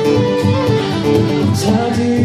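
Live acoustic country music between sung lines: an acoustic guitar strummed steadily under a fiddle playing held, sliding notes.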